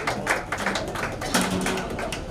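A few people clapping: irregular sharp claps, several a second, with faint voices behind them.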